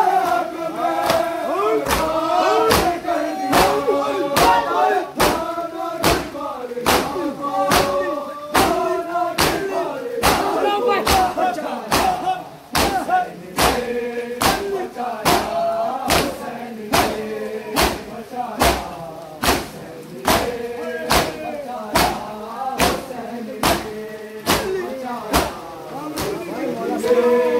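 Matam: a crowd of men striking their chests with open hands in unison, about three sharp slaps every two seconds, over a nauha chanted by male voices.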